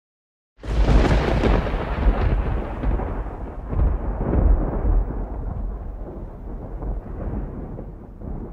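A deep, loud rumble that starts suddenly about half a second in and slowly dies away, its higher part fading first, like a thunder sound effect laid over the closing credits.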